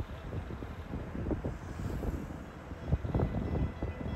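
Street traffic along a seaside road, cars passing with a low rumble, and wind buffeting the phone microphone, gustier about three seconds in.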